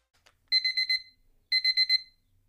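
Electronic alarm beeping, the wake-up alarm for the morning: groups of rapid, high-pitched beeps, each group about half a second long and repeating once a second, starting about half a second in.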